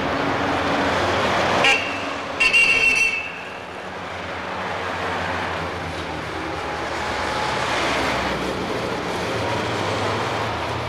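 Steady city street traffic noise with a car horn: a short toot under two seconds in, then a louder honk lasting well under a second.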